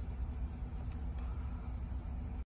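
2020 GMC Sierra AT4's engine idling with a steady low rumble, heard from inside the cab.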